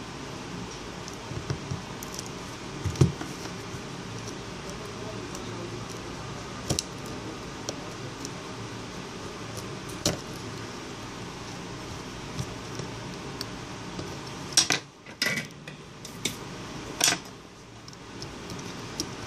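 Scattered small metallic clicks and taps as hand tools and fingers work on a mobile phone's circuit board and metal frame, over a steady background hiss. A quick run of louder clicks comes near the end.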